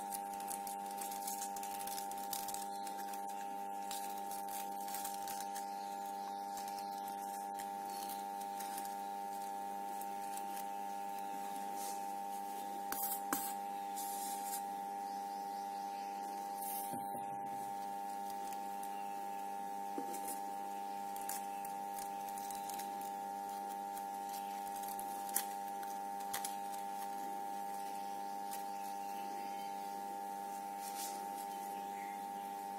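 A steady hum of several held tones throughout, with faint rustling and a few small clicks of crepe paper and wire being handled; two sharper clicks, about 13 s and 25 s in.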